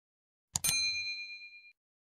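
A mouse click, then a bright bell ding sound effect for a notification bell, ringing out and fading over about a second.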